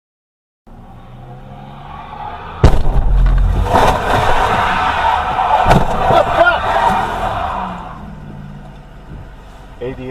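A car collision: a car runs steadily, then a sudden loud crash about three seconds in, several seconds of loud jumbled noise with a second bang, and the noise dies away.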